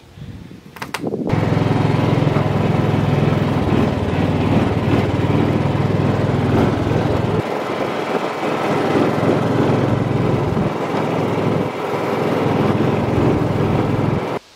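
Small-engine vehicle driving across a grassy field track, its engine running steadily. It starts about a second in, and the low rumble drops off about halfway through.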